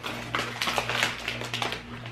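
Foil-lined plastic snack bags of kettle corn rustling and crinkling as they are handled, a rapid irregular run of small crackles.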